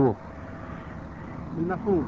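Men's speech in Arabic: a word ends at the start, then a pause of about a second and a half holding only steady background noise from the recording, and the speaking resumes near the end.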